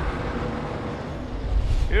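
Broadcast transition sound effect under an animated TV graphic: a noisy whoosh over a deep low rumble that swells once at the start and again, louder, toward the end.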